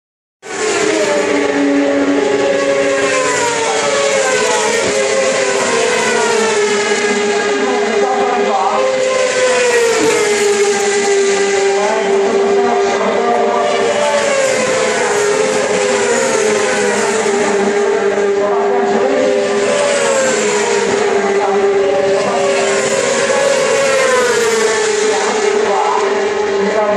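600 cc racing motorcycles on track, engines revving high and climbing through the gears, each note rising and then dropping at a shift, several engines overlapping over a steady drone.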